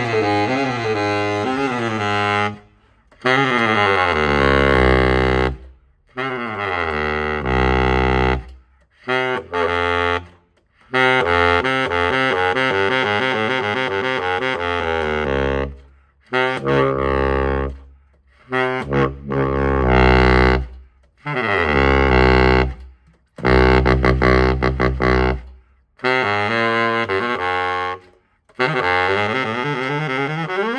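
Yamaha YBS-61 baritone saxophone played solo in a string of phrases of one to four seconds, with short breath pauses between them, moving from note to note and down into its deep low register.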